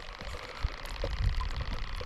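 Faint handling sounds from a hand reaching into a plastic minnow bucket to catch a bait minnow: a few soft ticks and small splashes about a second in, over a low steady rumble.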